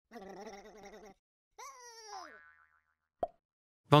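Cartoon sound effects: a steady pitched tone lasting about a second, then a tone that slides down in pitch for about a second, and a short click near the end.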